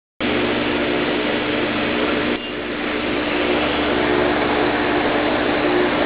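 Steady machine hum with a hiss over it, dipping briefly in level a little over two seconds in and then building back.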